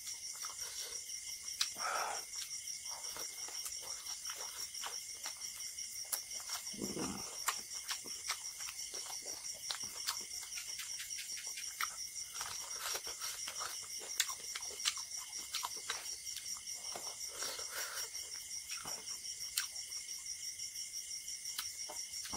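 Close-miked eating sounds from hand-eating curry and rice: wet chewing, lip smacks and small clicks, with a couple of brief hums. A steady high-pitched chorus of crickets chirps throughout.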